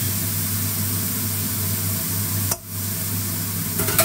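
Raw minced pork sizzling in a hot stainless steel pan without oil, a steady hiss that cuts out briefly a little past the middle.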